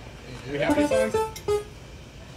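A few short notes played on an electronic keyboard, from about half a second in to about a second and a half in, with a voice around them.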